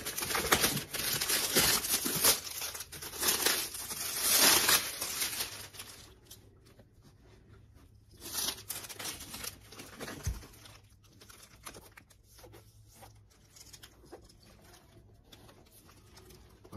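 Clear plastic wrap being torn and crinkled off a sneaker, loud and continuous for about the first six seconds, then quieter, with scattered crinkles as the last of it comes away.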